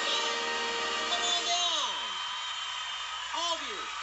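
A cartoon character's voice from a TV show calling out in long shouts that fall steeply in pitch, once about a second in and again near the end, over a steady hiss. Held tones of a music sting fade out during the first second and a half.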